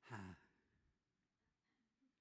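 A man's short, falling sigh into a handheld microphone, lasting about half a second at the very start.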